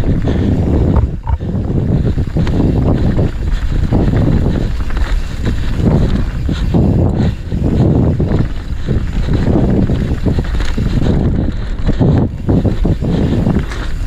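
Wind buffeting a GoPro's microphone while riding a mountain bike down a dirt forest trail: a loud rushing that swells and dips every half second or so.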